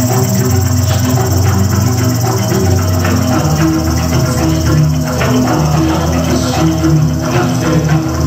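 Live ensemble music: gamelan keyed percussion and an electronic drum kit playing together, with steady low notes under a busy rhythm of struck strokes.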